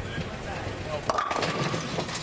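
Bowling ball rolling down a wooden lane, then crashing into the pins about a second in with a clatter of pins, leaving two standing in a split; crowd voices underneath.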